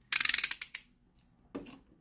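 Snap-off utility knife blade slid out with a rapid run of sharp ratchet clicks, lasting under a second, followed by a shorter, softer burst about a second and a half in.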